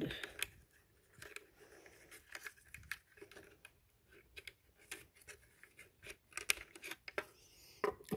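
Fingers handling the plastic parts inside a Mercedes-Benz W211 door mirror housing: faint, irregular small clicks and scrapes.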